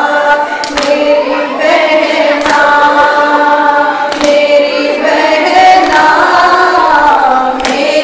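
Female voices chanting a Shia noha lament without instruments, a lead voice with others joining. Sharp hand strikes of matam chest-beating land in time with the chant about every second and three-quarters, five in all.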